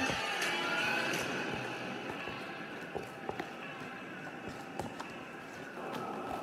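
Background music, with a few sharp clicks and taps in the second half.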